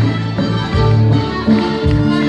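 A live folk band playing: fiddle with accordion, guitars and a sustained bass line underneath.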